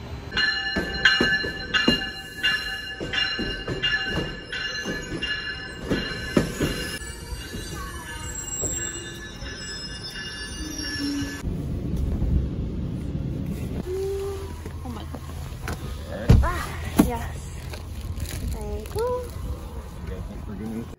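A passenger train running along the platform: a steady high squeal from the wheels over a regular clack about once a second. After an abrupt change about halfway, a quieter stretch with two loud thumps.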